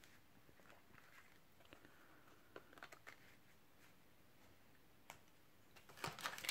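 Near silence, with a few faint soft ticks of trading cards being handled, mostly in the middle and once more near the end.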